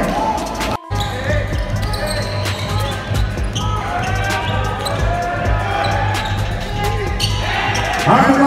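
Basketball game sound in a gym: a ball dribbling on the court and players calling out, over background music with a steady bass beat. The audio cuts out briefly about a second in.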